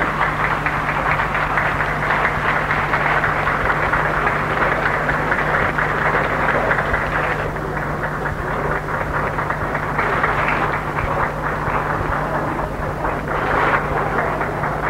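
Audience applauding: dense, steady clapping that thins a little about halfway through and swells again near the end, over a steady low hum.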